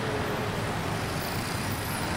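Steady city street traffic noise.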